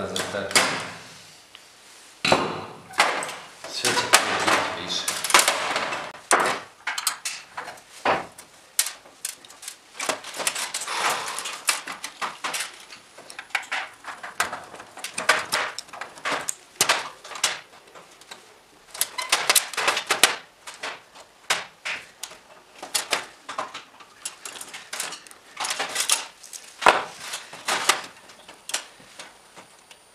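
Irregular metallic clicks, taps and clatter from screwdriver work and loose parts on the sheet-metal housing of a fluorescent light fitting, as its ballasts and other components are unscrewed and taken out.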